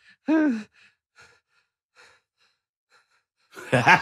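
A short sigh with a falling pitch about half a second in. Near the end, a man bursts into loud laughter in quick, rhythmic pulses.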